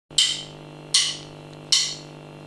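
Drummer's count-in: three sharp clicks of drumsticks, evenly spaced about three quarters of a second apart, over a faint steady low hum.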